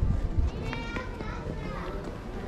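Indistinct voices of people, with a child's high-pitched voice calling out about a second in.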